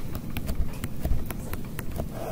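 Stylus tapping and clicking against a tablet screen while handwriting: a quick, irregular series of about a dozen sharp clicks.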